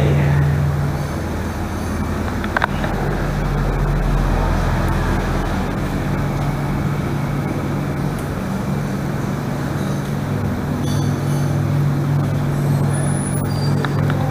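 A steady low mechanical hum under a constant rushing noise, with one sharp click about two and a half seconds in.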